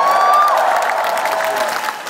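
Large concert crowd applauding and cheering, with one high voice rising and holding for about half a second near the start.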